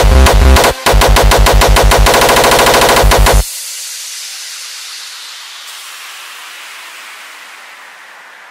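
The end of a Frenchcore track: heavy distorted kick drums in a rapid roll that packs tighter, with a brief break just under a second in, then cuts off suddenly about three and a half seconds in. A fading hiss of reverb tail is left behind.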